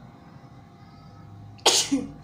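A woman sneezing once near the end, sudden and loud, after a faint steady hum.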